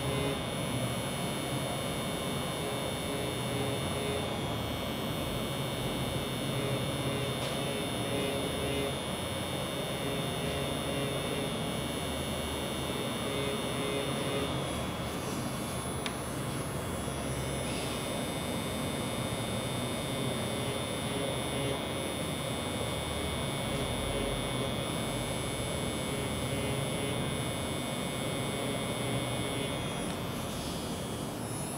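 Steady electric buzz and hum of a permanent-makeup machine pen running while hair strokes are drawn on latex practice skin.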